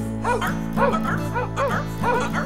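A quick run of dog yaps or barks, about four or five a second, over acoustic guitar backing music.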